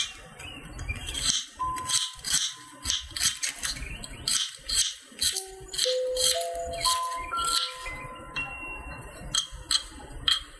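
Light background music with a simple melody of chime-like notes, over repeated short clicking and rattling throughout.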